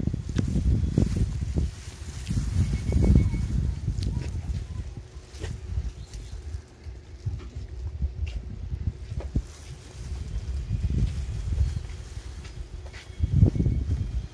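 Wind buffeting the microphone: an uneven low rumble that rises and falls in gusts, strongest in the first few seconds and again shortly before the end.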